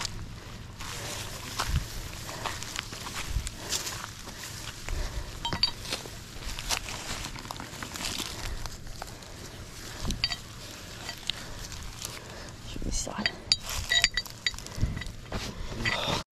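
Rustling and footsteps through long dry grass while winch recovery straps and fittings are handled, with a few light metallic clinks in the second half.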